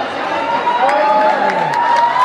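Crowd of spectators cheering and shouting, many voices overlapping.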